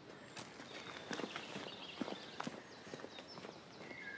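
Faint outdoor ambience: a quiet background hush with a few faint, scattered bird chirps and soft irregular taps.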